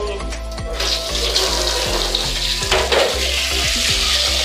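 Water running from a tap, a steady rush that starts about a second in, over background music with a steady beat.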